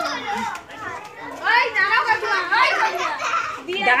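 Children's voices shouting and chattering at play, high-pitched and overlapping.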